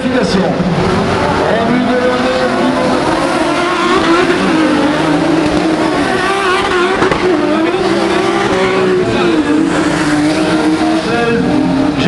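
Several autocross touring cars racing on a dirt track, their engines revving up and dropping back repeatedly as they power through a curve.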